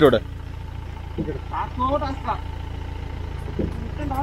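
A Mahindra Bolero's diesel engine idling, a steady low rumble, with faint voices talking in the background.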